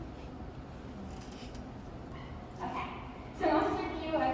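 Hall room tone, then a woman's voice over the PA system begins about two and a half seconds in and grows loud near the end.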